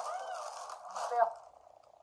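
A woman's closed-mouth "mmm" of approval, rising and falling in pitch, while she chews a crunchy potato chip with bean dip. The sounds fade out about a second and a half in.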